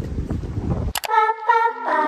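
Wind buffeting the microphone outdoors for about a second, cut off abruptly by background music: plucked guitar-like notes.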